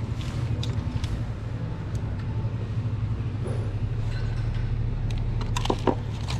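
Steady low mechanical hum throughout, with a cluster of sharp metallic clicks and a jangle near the end.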